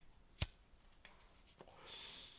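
A few sharp clicks over faint room noise: a loud one about half a second in, a softer one about a second in and a faint one near the end, with the background noise swelling slightly toward the end.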